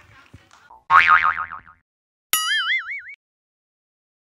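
Two cartoon 'boing' sound effects with a fast wobbling pitch: one about a second in, and a second one that starts with a sharp click about two and a half seconds in and lasts under a second.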